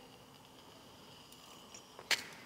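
Near silence: room tone, with a few very faint ticks in the second half.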